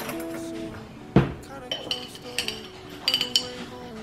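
A metal spoon clinking against a glass jar while scooping instant coffee powder, in two short clusters of bright, ringing clinks, after a single thump about a second in. Background music plays throughout.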